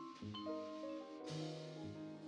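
Live jazz combo playing, led by vibraphone: mallet-struck notes ringing and overlapping over piano, upright bass and drums.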